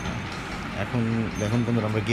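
A man speaking from about a second in, over a steady background hiss.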